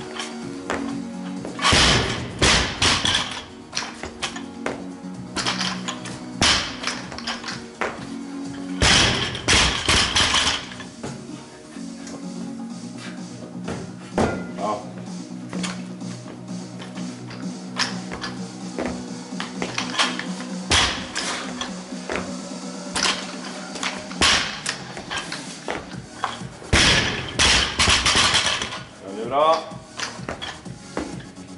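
Background music playing throughout, broken by several loud crashes as a loaded barbell with rubber bumper plates is dropped onto the lifting platform between clean and jerks.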